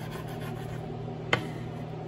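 Kitchen knife sawing and cutting through smoked sausage on a bamboo cutting board, with one sharp knock of the blade on the board about halfway through. A steady low hum runs underneath.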